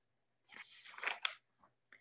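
A brief crackling rustle of paper lasting under a second, as a page of the manuscript being read aloud is turned.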